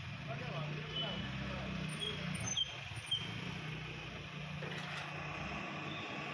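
Steady low motor hum with faint, indistinct voices in the background and a few short high chirps.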